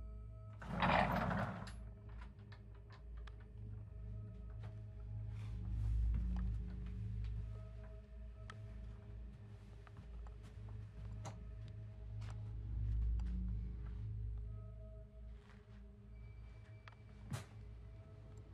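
Low, droning suspense film score that swells and fades, with a few held higher tones above it. A loud, noisy rushing hit about a second in, scattered faint clicks, and one sharp click near the end.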